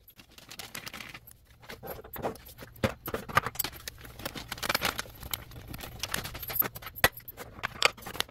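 Plastic spice bag crinkling and rustling as ground spice is poured into a clear acrylic spice box, with scattered light clicks and a couple of sharper knocks of the acrylic pots.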